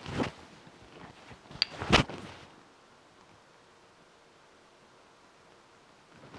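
A few clinks and knocks of glass bottles and a spoon against a small glass bowl and a wooden cutting board: a short ringing clink, then a louder knock about two seconds in. After that, near silence.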